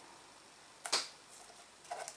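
A single sharp click about a second in and a fainter tick near the end, from hands handling ribbon and a glue bottle against a plastic bottle, over quiet room tone.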